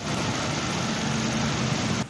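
Steady street traffic noise with a motor scooter's engine idling, a low hum under a hiss that starts abruptly at the cut.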